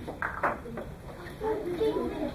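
Low background chatter of children's voices, with two or three light taps or clicks in the first half second.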